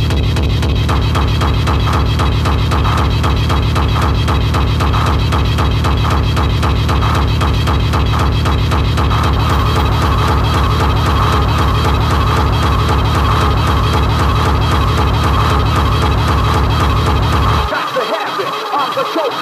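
Electronic techno track made on an Amiga 500 computer: a fast, steady kick drum and heavy bass pattern. A brighter sustained synth layer comes in about halfway. The kick and bass drop out just before the end.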